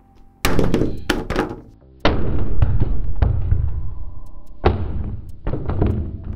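Steel claw hammer striking a smartphone's screen on a marble tabletop in a durability test: a few quick knocks in the first second and a half, then two heavier blows, about two and about four and a half seconds in, each dying away slowly. The phone survives.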